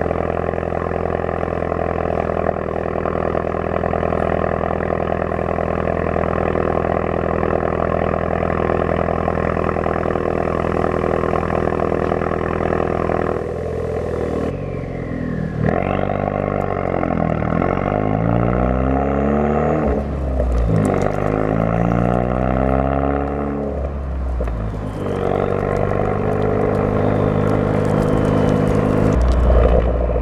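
Straight-piped 2018 Ford Focus ST's turbocharged 2.0-litre four-cylinder exhaust, muffler and resonator removed, idling with a steady drone for about the first 13 seconds. Then the engine speed climbs and falls several times as the car drives off, before settling into a steadier run near the end.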